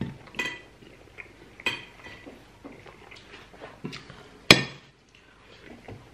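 Several short clinks of plates and cutlery on a table. The loudest, a sharp ringing clink about four and a half seconds in, comes as a plate is set down.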